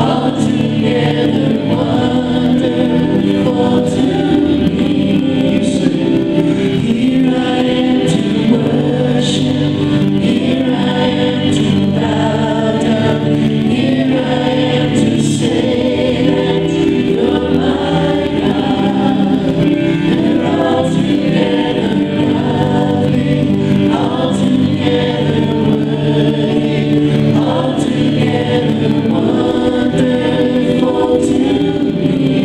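Live worship band performing a praise song: several voices, men and women, singing together into microphones over strummed acoustic guitar and electronic keyboard, steady and continuous.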